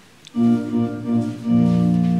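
Electronic keyboard on an organ voice starting a hymn introduction: sustained chords begin suddenly about a third of a second in and move to a new chord about halfway through.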